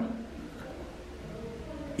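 A quiet pause holding only a faint, steady low hum of room tone. No distinct sound event.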